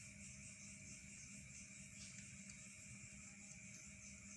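Near silence: a steady faint hum and hiss, with one or two very faint ticks.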